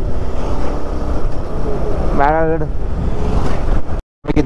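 Moving motorcycle at about 45 km/h: steady wind rush on the microphone over the engine and tyre noise.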